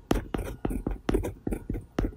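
Edited logo sting: a rapid run of short, sharp sounds, about four a second.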